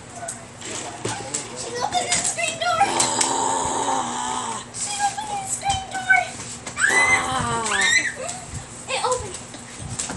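Children's voices talking and calling out, with one voice rising high about seven seconds in.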